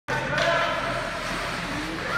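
Echoing ice-rink ambience: young hockey players' high voices calling out across the ice over a steady low hum.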